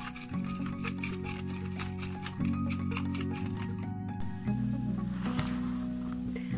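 Homemade wind chime jingling and clicking lightly as its metal zipper pulls and necklace knock together, over background music; the clicking dies away about four seconds in.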